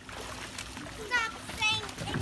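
Pool water splashing as children swim, with two short, high-pitched children's shouts about a second in and near the end.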